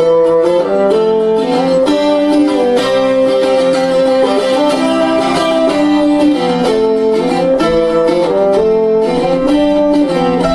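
Instrumental folk music: a bassoon plays a melody of held notes over an acoustic plucked string instrument.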